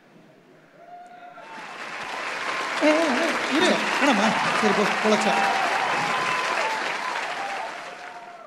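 Audience clapping and cheering, with shouted voices mixed in. It swells up about a second and a half in and dies away near the end.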